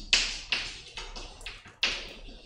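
Chalk writing on a blackboard: a quick series of about five short taps and scratches as words are chalked up.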